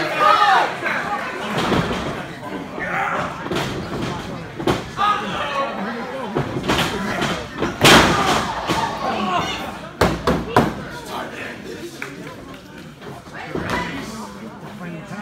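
Sharp slams on a pro wrestling ring, a wrestler's body hitting the mat, several times, the loudest about eight seconds in, over shouting voices of the ringside crowd.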